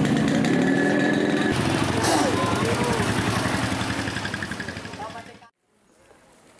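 Busy market ambience: a vehicle engine running steadily under people's voices. It fades out to near silence about five seconds in.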